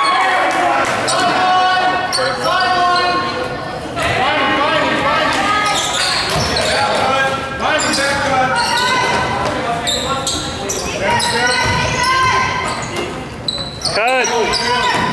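A basketball bouncing on a gym's hardwood floor during play, several bounces echoing in a large hall. Players' and spectators' voices are heard nearly throughout.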